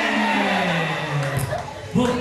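A person's voice drawn out in one long call that slowly falls in pitch, then breaks off shortly before the end.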